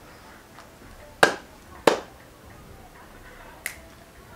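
Two sharp finger snaps about half a second apart, a little over a second in, then a fainter click near the end.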